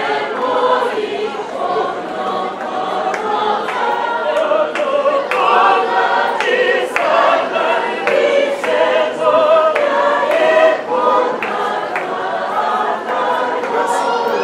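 A choir singing, many voices together, at a steady level.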